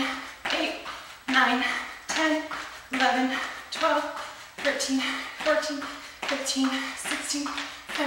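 Jumping jacks: sneakers landing on a gym floor mat in a steady rhythm, about one landing every three-quarters of a second. Each landing comes with a woman counting the rep aloud.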